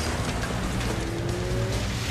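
Action-film sound mix: a car engine and a dense low rumble of explosion and debris under music, with a faint rising tone in the second half.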